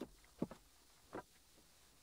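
Near quiet: room tone with three faint, brief sounds, at the start, about half a second in and just over a second in. No engine or starter motor is heard.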